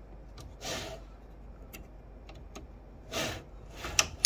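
Hands handling the plastic tool heads of a 3D printer as they are set onto the X-axis rods. There are two soft sliding rustles, one about a second in and one near the end, plus a few light clicks, with a sharper click at the very end.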